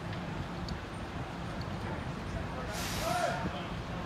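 Outdoor ambience at a house fire: a steady low rumble, with a short hiss about three seconds in and faint voices.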